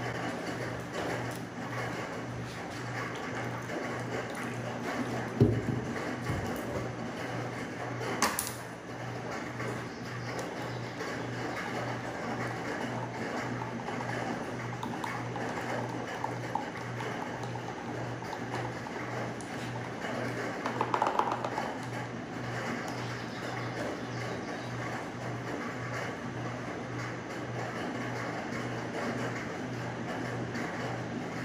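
Background music with a steady low beat pulsing about twice a second. A short knock comes about five seconds in and a sharp click about eight seconds in.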